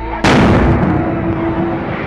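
A loud explosion about a quarter of a second in, followed by a long fading tail: a gas cylinder bursting in the building fire.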